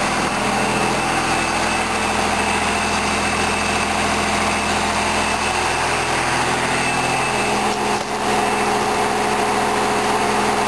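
1999 Dodge Ram's 5.9-litre 24-valve Cummins inline-six diesel idling steadily, straight-piped through a 5-inch stack with a Holset turbo.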